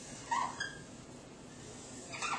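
Dry-erase marker squeaking on a whiteboard as it writes: one short squeal about a third of a second in, over faint room hiss.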